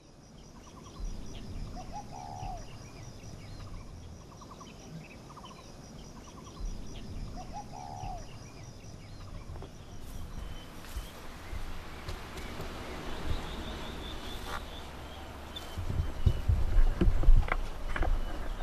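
Birds calling in outdoor rural ambience, with one short call repeated twice about five seconds apart over a steady high trilling. About ten seconds in the background changes, and loud low thumps and rumbling come in near the end.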